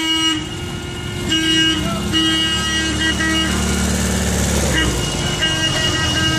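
Old cars driving past slowly in a procession, their horns tooting in short and held blasts, with one car's engine swelling as it passes in the middle.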